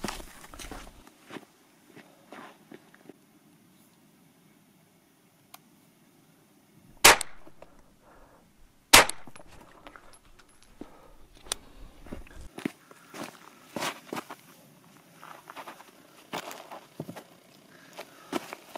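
Two 9 mm gunshots about two seconds apart, each cracking sharply and echoing briefly.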